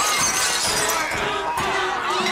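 A glass jar smashing and shattering on the floor, a loud crash of breaking glass.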